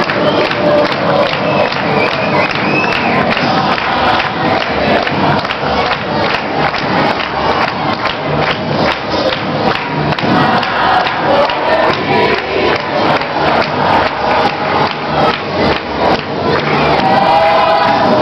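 A crowd of voices with music and group singing, over a steady beat.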